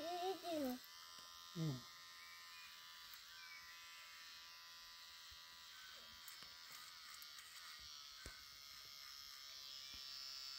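Electric hair clipper running with a faint, steady buzz as it cuts a boy's hair. A voice speaks briefly near the start.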